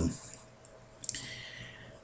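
A pause between spoken sentences: the last word trails off, then a single sharp click about a second in, followed by a faint hiss that fades away.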